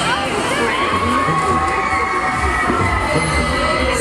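Many riders screaming and shouting together on a swinging pendulum thrill ride, overlapping high-pitched voices going on steadily throughout.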